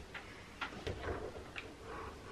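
A few light, irregular clicks and small handling noises from a thin wire being pulled and fitted along a ceiling.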